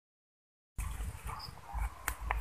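Silence, then about three-quarters of a second in, outdoor sound cuts in suddenly. It is a low rumble of wind on the microphone with a few faint high chirps.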